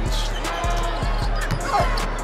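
Background music with a steady beat, over basketball game sound with a ball being dribbled on the court.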